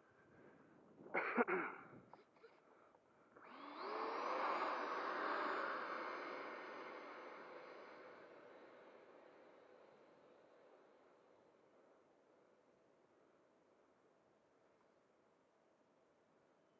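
Electric ducted fan of an FMS Rafale 80mm RC jet spooling up with a rising whine for takeoff, then a steady rush that fades as the jet rolls away down the runway. A short loud burst comes about a second in.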